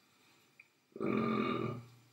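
A man's drawn-out vocal hesitation sound, about a second long at an even pitch, starting about halfway in: a filler noise while he searches for an answer.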